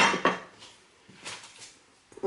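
A single sharp knock of kitchenware at the start, ringing briefly and fading within a fraction of a second, followed by faint handling sounds.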